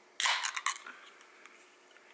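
Aluminium soda can of Olipop Tropical Punch sparkling tonic cracked open by its pull-tab: a sudden pop and hiss of escaping carbonation about a quarter second in, a second click shortly after, then dying away within a second.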